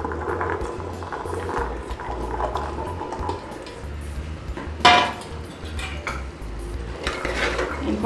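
Soaked chickpeas being tipped and scraped from a bowl into a pressure cooker of masala, with the bowl and a spoon clinking against the pot. One sharp clink comes about five seconds in.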